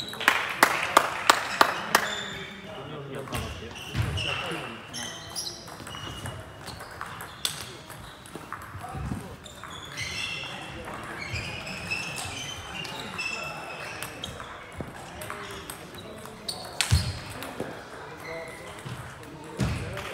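Table tennis ball clicking sharply in a quick, even run of about six strikes on the table and bats, then echoing voices in a large hall, with a few more ball clicks near the end.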